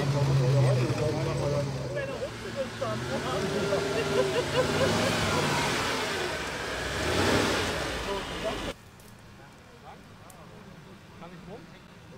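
Mercedes-Benz G-Class off-roader engine running under load as it crawls over a sandy slope, with people talking nearby and the engine swelling louder about two-thirds of the way through. Near the end the sound drops suddenly to a much fainter, distant engine and background.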